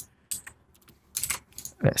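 A few scattered short clicks from a computer mouse and keyboard, most of them in the first second and a half.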